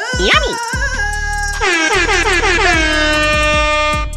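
A loud edited-in sound effect over background music: a warbling cry in the first second, then a horn-like blare whose many pitches slide down and settle into a steady held chord until it cuts off at the end.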